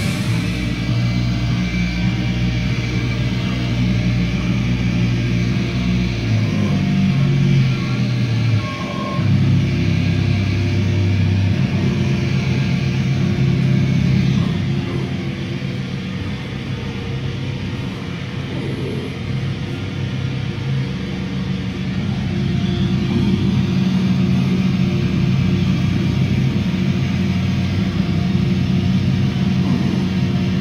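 Heavy band playing live in a slow, droning passage: distorted guitar and bass hold long low notes that shift every few seconds over a wash of noise, somewhat quieter in the middle.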